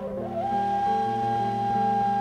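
A sustained high, flute-like note held at a steady pitch after a short slide up into it. Beneath it, lower accompanying notes change every fraction of a second, as in an improvised duo with guitar.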